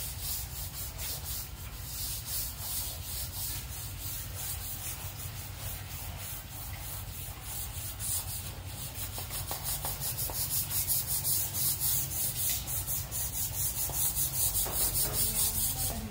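A rhythmic rubbing hiss, pulsing a couple of times a second and growing louder about halfway through, over a low steady hum.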